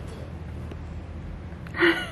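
Low room noise, then a single short, loud, breathy gasp from a person near the end.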